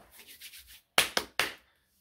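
Hands rubbing together briefly, then three sharp hand claps in quick succession about a second in.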